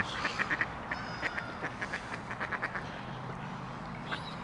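Mallard ducks calling with many short, rapid quacks, a burst in the first second and another through the middle.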